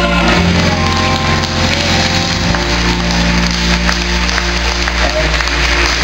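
The final held chords of a gospel song's accompaniment track, with no voices singing and an audience applauding over them.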